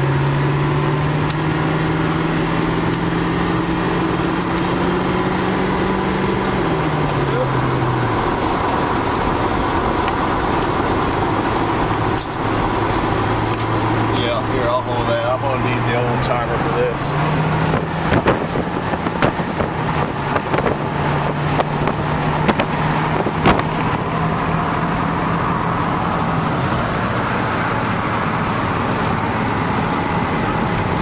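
Car cabin noise from a vehicle in slow highway traffic: a steady road rumble with an engine hum that drops in pitch about six seconds in and rises again around seventeen seconds as the car slows and picks up. Through the middle a run of sharp clicks and cracks sounds over it.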